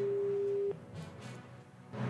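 A single steady electronic beep, one pure tone held for under a second that cuts off abruptly, over faint background music.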